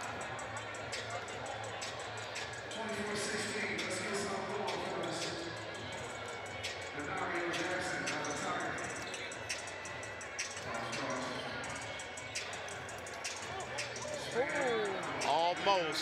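Basketball gym ambience: music over the arena sound system and the chatter of the crowd. Near the end, a burst of sharp sneaker squeaks on the hardwood floor as the players run the court.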